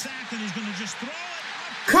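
Football game broadcast audio: a commentator's voice, faint and low in the mix, over a steady hiss of stadium crowd noise.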